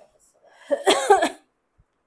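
A short, loud burst of a person's voice, under a second long, starting about half a second in.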